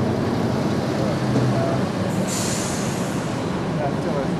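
An electric tram running along the street, with a steady rumble and a short hiss about two seconds in.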